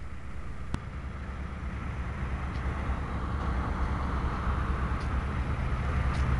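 A motor vehicle's engine idling: a steady low rumble that grows gradually louder, with a single sharp click about three-quarters of a second in.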